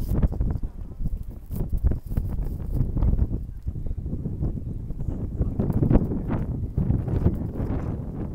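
Wind buffeting the microphone: a loud, gusty low rumble that swells and drops unevenly.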